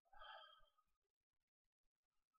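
A man's short, soft sigh, a breathy exhale in the first half-second, then near silence.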